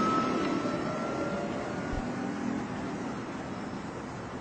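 Electric car driving away: the motor's whine holds one high pitch and fades out about two seconds in, while the tyre and road noise slowly dies away.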